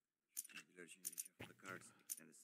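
Faint, low-level man's speech with a few light, high clicks among it.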